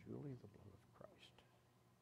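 Faint, murmured speech: a low voice at the start, a shorter word about a second in, and a soft whispered hiss just after.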